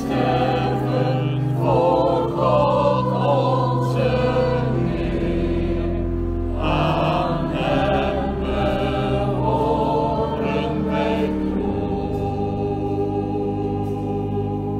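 Church choir singing in slow, long-held notes.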